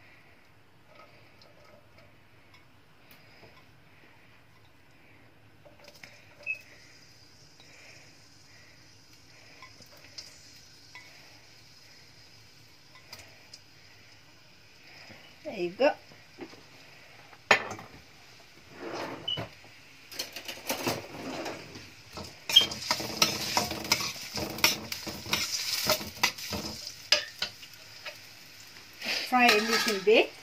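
Chopped onion and spring onion sizzling in oil in a stainless steel pan, the steady hiss setting in a few seconds in. From about twenty seconds on, stirring: a utensil knocks and scrapes against the pan, loudly and often.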